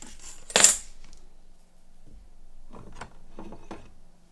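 A metal hand tool is set down on the workbench with a sharp, ringing clink about half a second in, followed near the end by a few light clicks and knocks of tools being handled.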